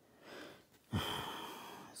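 A man's audible breath through the nose, starting suddenly about a second in and fading away over the next second.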